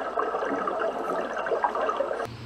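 Steady watery hiss picked up by a camera underwater in a swimming pool, with no distinct splashes or bubble bursts.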